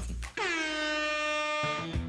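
A single air-horn blast, a bit over a second long, dipping slightly in pitch at the start and then holding one steady tone: the start signal for a timed challenge.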